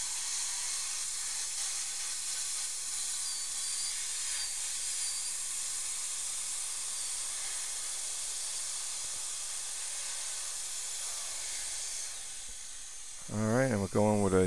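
High-speed dental handpiece cutting with its water spray, together with the suction: a steady hiss with a faint, wavering high whine as the burr reduces the tooth's occlusal surface. The hiss eases off near the end.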